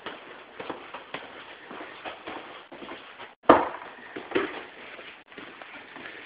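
Footsteps on a hard floor with handheld-camera handling knocks, an irregular string of soft taps and one louder knock about three and a half seconds in.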